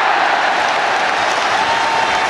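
Football stadium crowd cheering a goal: a loud, steady wall of cheering from thousands of fans.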